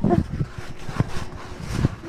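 Wind and handling noise on a handheld phone's microphone as it is swung about: an uneven low rumble with a few knocks, one sharper knock about a second in, and a faint steady hum in the middle.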